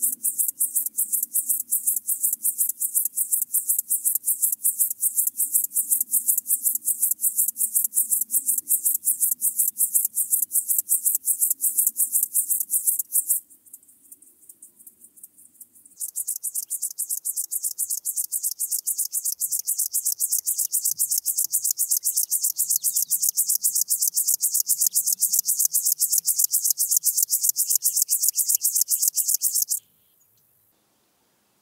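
Locomotive grasshopper (Chorthippus apricarius) stridulating: a long, fast, even series of high-pitched rasping pulses. It breaks off about 13 seconds in, stays faint for a couple of seconds, then starts again at full strength and runs on until just before the end.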